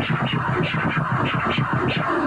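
Turntable scratching: a vinyl record worked by hand and chopped with the mixer's fader in laser scratches, a fast, steady run of short cut strokes at about ten a second.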